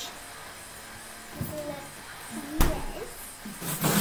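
A single sharp thump about two and a half seconds in, the loudest sound here, over faint background music; a short spoken protest follows it.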